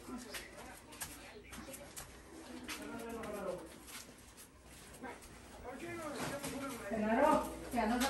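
Indistinct voices that grow louder near the end, with a few light knocks from people moving about.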